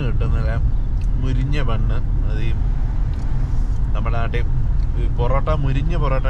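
Steady low rumble of road and engine noise inside a moving Mahindra car's cabin.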